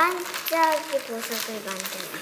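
A young girl speaking Korean in a high voice.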